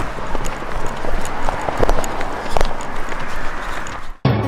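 Footsteps on a concrete pavement, heard as irregular knocks over the rumble of a handheld camera on the move.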